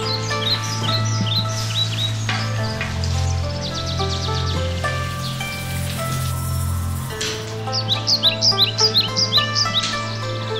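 Calm instrumental background music: held notes over a steady low drone, with birdsong chirps woven through. The chirps come in quick runs at the start and again near the end.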